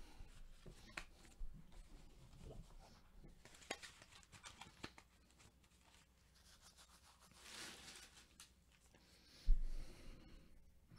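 Quiet handling sounds: scattered light clicks and rustles, a brief rustle around eight seconds in, and a thump near the end as a gloved hand takes hold of a trading card in a plastic holder on a mat.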